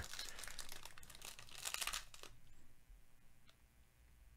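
Foil wrapper of a trading card pack being torn open and crinkled by hand: a crackling rustle for about two seconds that then fades, with a couple of faint clicks near the end.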